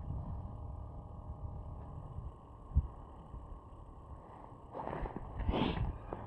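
Low wind rumble on the microphone, with a single knock about three seconds in and a brief rustle near the end as mittened hands handle the ice rod and line.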